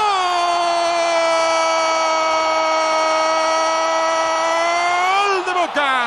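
A football commentator's long goal cry, one held note of about five seconds that breaks off near the end, hailing an equalising goal.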